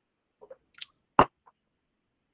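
Near silence broken by a few brief, small clicks, the loudest and sharpest a little over a second in.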